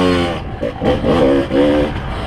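Kawasaki KDX220 two-stroke dirt bike engine revving up and down as the throttle is opened and closed, with brief dips between pulls.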